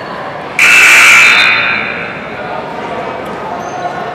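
A loud game-stopping signal, a steady blast about a second long, sounds about half a second in and dies away in the gym's echo, over a steady murmur of crowd chatter.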